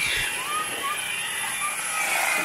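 Electric hedge trimmer running at a distance: a steady mechanical hum and hiss, its high whine dipping in pitch and fading right at the start.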